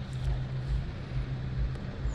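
Low, steady outdoor background rumble with soft low thumps a few times a second and no single clear source.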